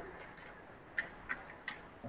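Four light, sharp clicks at uneven spacing over a quiet room background.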